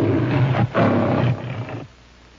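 The MGM logo's lion roaring twice, with a short break about two-thirds of a second in. The second roar fades into a softer growl and stops just before the end.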